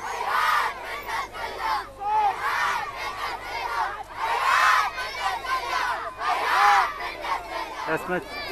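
A crowd of children and teenagers shouting slogans in unison, in loud chanted shouts that repeat about every two seconds.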